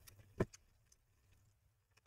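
Quiet room tone with one light click about half a second in and a few fainter ticks, from a gloved hand handling the laptop's bottom cover.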